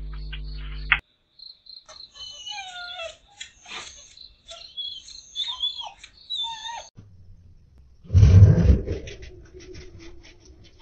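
A dog barking and yelping in short, scattered cries that rise and fall in pitch, after about a second of music. About eight seconds in there is a loud rush of noise.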